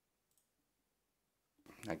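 Near silence, with one faint, light click about a third of a second in; a man's voice starts speaking just before the end.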